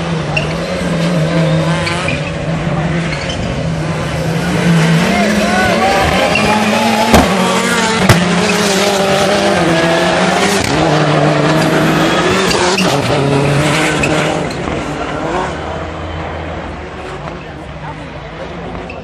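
Several turbocharged four-wheel-drive rallycross Supercars racing through a corner, their engines revving up and down with each gear change and lift. Two sharp bangs about seven and eight seconds in are the loudest moments, and the engines fade after about fourteen seconds as the cars pull away.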